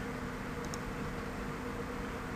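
Steady low hiss with a faint hum underneath: room tone and recording noise.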